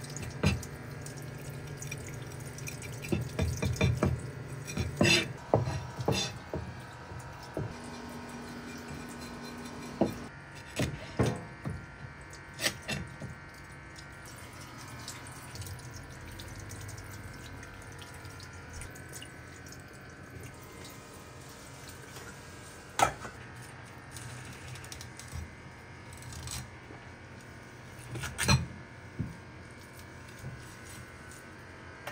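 Tap water running steadily over fish being gutted and rinsed at a sink, with scattered sharp knocks and clicks from a knife on a plastic cutting board; the sharpest knocks come about 23 and 28 seconds in.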